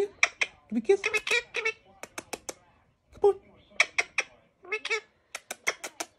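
Indian ringneck parakeet chattering in a run of short, squeaky, speech-like calls and sharp clicks, with a brief lull about halfway through.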